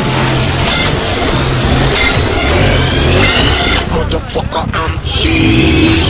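Background music with a repeating bass line, mixed with dirt bike engines revving, the revs climbing about three seconds in.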